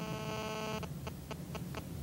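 A steady electronic tone made of several pitches sounding together, cutting off about a second in, followed by four light clicks, over a low steady mains hum.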